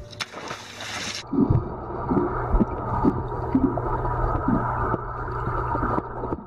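A dog splashing into a swimming pool. About a second in, the sound turns suddenly muffled as it goes underwater: bubbling and dull knocks as the dog swims below the surface.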